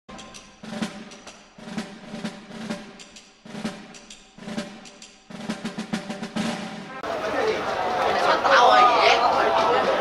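Intro music with drum rolls and percussion hits, in repeated phrases, for about seven seconds; then it cuts to the chatter of people's voices in the open air.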